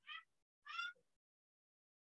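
A cat meowing twice: two short, high-pitched meows about half a second apart.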